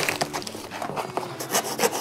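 A large cardboard box being torn and scraped open by hand: an irregular run of rasping, crackling strokes of cardboard and packing tape.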